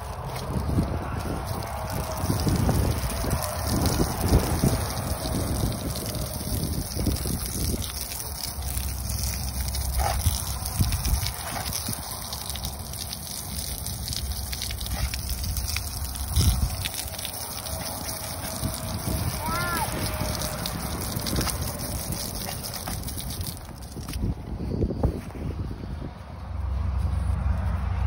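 Water from a hose spraying against an alloy wheel and tyre, rinsing off the wheel cleaner: a steady spray that stops about four seconds before the end.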